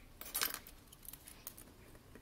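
Small metallic clinks and clicks from a watch's metal link bracelet as the watch is handled: a quick cluster about half a second in, then a few scattered ones.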